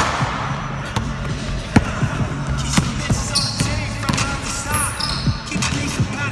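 Basketball being dribbled on a gym's hardwood floor, a run of sharp bounces at uneven spacing, about one every half second to a second.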